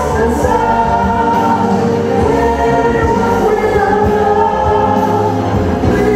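Live pop music: a man and a woman singing together over an instrumental backing, with long held notes.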